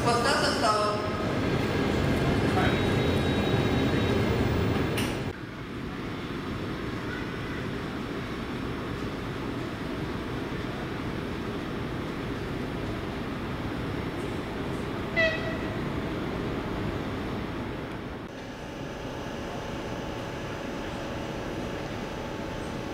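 Steady rumble at a railway platform beside a standing train and its electric locomotive, louder for the first five seconds, with one short high-pitched whistle toot about fifteen seconds in.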